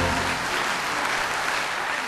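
Audience applauding as the last sung chord of a kantada cuts off just after the start.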